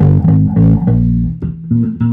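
Four-string electric bass guitar played solo: a quick run of separate plucked notes, a chromatic fill stepping up from the G groove to B flat, with a held note starting at the very end.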